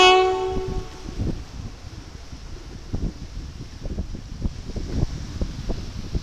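A last saxophone note fades out within the first second. Then sea waves wash against a rocky shore, with irregular splashes over a steady surf hiss.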